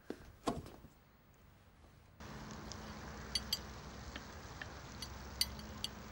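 Tableware sounds: a couple of light knocks of dishes being handled, a short lull, then a steady low background hum comes in with scattered sharp clinks of cutlery and glasses.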